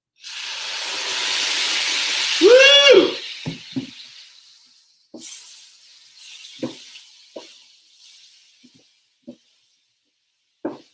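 Brandy poured onto the hot butter and brown-sugar mixture on an electric griddle, sizzling loudly at once and dying away over about five seconds. A second loud sizzle starts about five seconds in and fades, with a few light knocks from a spatula on the griddle.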